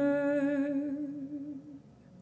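A woman's voice holding one note with vibrato, fading away by near the end.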